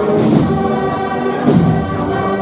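Spanish wind band playing a Holy Week processional march, with sustained brass and woodwind chords and a percussion stroke about a second and a half in.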